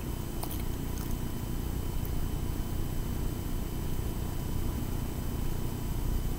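Low, steady background rumble with a few faint steady high whine tones over it, and a faint click about half a second in.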